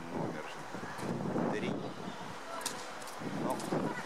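Indistinct talking: a person's voice speaking in short phrases that cannot be made out.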